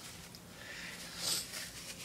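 Quiet handling noise: a brief soft rustle a little over a second in, over a faint steady hum.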